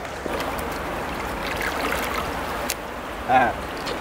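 Steady rush of a mountain river's current flowing around the wading angler, with a short vocal sound a little after three seconds in.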